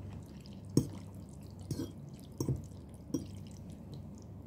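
Wet mouth sounds of someone eating noodles: four short, sharp slurps and smacks, the first the loudest, over a steady low hum.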